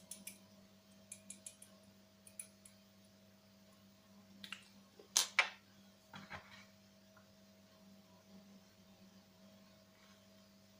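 Faint, scattered clicks and light taps from hands handling a small glass sample vial and a plastic gold pan of wet gravel, with two sharper clicks close together about five seconds in, over a faint steady hum.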